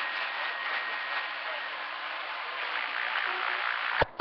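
Steady hiss of radio static from a CB radio receiver between transmissions, an even rushing noise with no voice on the channel.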